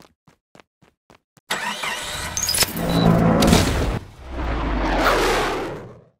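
Cartoon sound effect of a small plane's engine: after about a second and a half of faint ticking, it starts suddenly and runs loudly. It is followed by a second swelling, low rumbling noise that fades away near the end.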